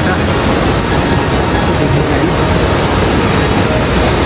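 Large waterfall close by: a loud, steady rush of falling water with no rhythm or break.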